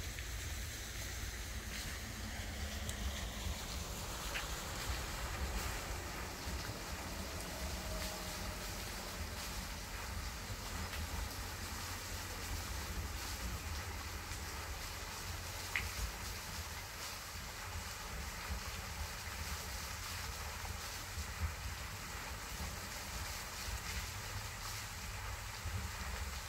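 Steady wind on the microphone: a low rumble under a constant rushing hiss, with a few faint ticks.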